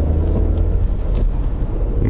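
Steady low engine and road rumble inside the cabin of a Honda N-ONE RS kei car on the move.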